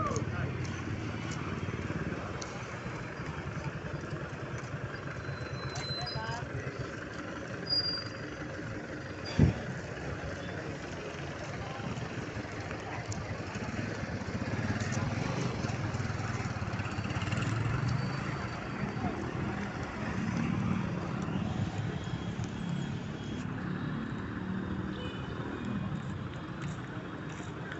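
Street ambience: a steady bed of traffic noise with indistinct voices, and one sharp knock about nine and a half seconds in.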